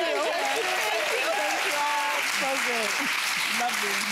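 Studio audience applauding steadily, with laughter and voices over the clapping.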